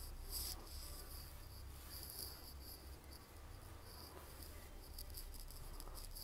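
Wide flat paintbrush dry-brushing acrylic paint across a painted plaque: faint, repeated scratchy strokes of the bristles on the surface.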